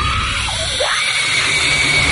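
A woman screaming: about a second in, her cry rises sharply and is held as one long, high scream, over a low rumble of film score.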